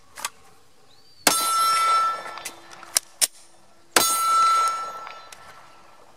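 Two shots from a Glock 48 9mm pistol, about two and a half seconds apart. Each is followed by about a second of clear metallic ringing that fades out.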